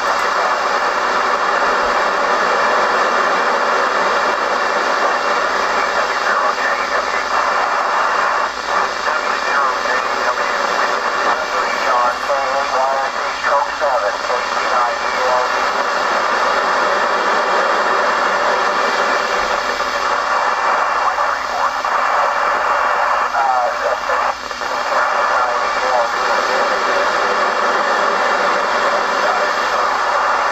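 Kenwood TR-7950 2 m FM transceiver receiving the AO-85 (Fox-1A) cubesat's FM repeater downlink on 145.980 MHz: a steady loud rush of FM noise. A weak voice breaks faintly through it about twelve seconds in and again near twenty-three seconds.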